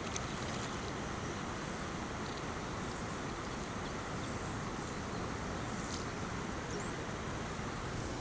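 Steady rushing outdoor noise of wind on the microphone over open river water, even throughout with no distinct events.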